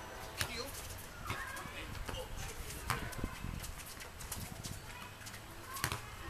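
Soccer ball being kicked and bouncing on a hard tennis court: several sharp thumps spread through the rally, the loudest about half a second in, near the middle and just before the end, with players' short shouts in between.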